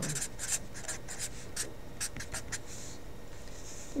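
Felt-tip marker writing on graph paper: a quick run of short strokes, then two longer strokes near the end.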